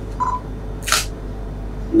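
A single short camera shutter click about a second in, preceded by a brief faint beep, over a steady low room hum.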